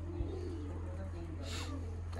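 Faint bird cooing under a steady low hum.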